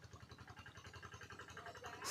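Near silence with a faint, low, rapidly pulsing hum.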